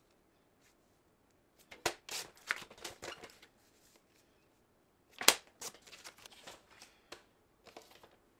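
Cardstock being slid and handled on a sliding-blade paper trimmer, with short rustles and clicks as the sheet is positioned and cut. A sharp click about five seconds in is the loudest sound.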